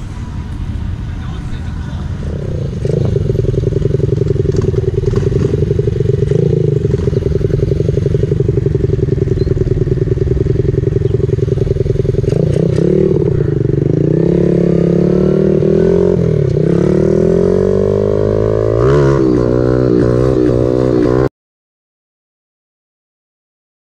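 Small 49cc Honda mini bike's single-cylinder four-stroke engine picking up about three seconds in and running under throttle, its pitch steady for a while, then rising and falling repeatedly as it is revved and shifted in the second half. The sound cuts off suddenly just before the end.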